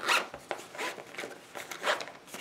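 The zipper of a small fabric makeup pouch being zipped closed, in a few short rasping strokes.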